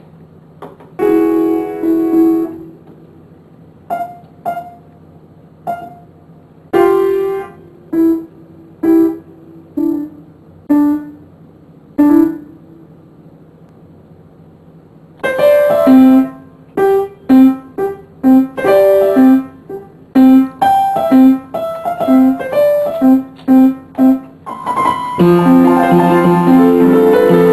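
Upright piano played solo: a chord about a second in, then single notes and chords spaced about a second apart, a pause of a couple of seconds, and from a little past midway a quicker passage of repeated notes, about two a second, ending in fuller chords.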